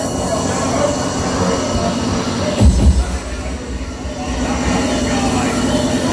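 Electronic dance music from a DJ set over club speakers. The top end drops away and a deep bass comes in about two and a half seconds in, and a long held synth note runs near the end.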